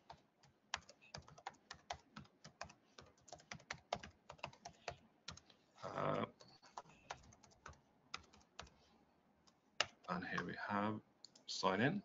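Typing on a computer keyboard: a quick run of key clicks for about five seconds, a short break, then a shorter run. A voice is heard briefly near the end.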